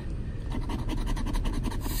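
A plastic scratcher scraping the coating off a lottery scratch-off ticket in quick, even back-and-forth strokes.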